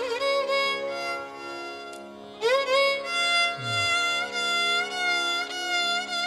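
Carnatic violin playing ornamented, wavering and sliding melodic phrases over a steady drone. The phrase dips in level about two seconds in, and a new one enters with an upward slide half a second later.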